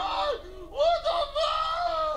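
A high-pitched voice making drawn-out, wordless cries: a short one, then a longer held one of about a second.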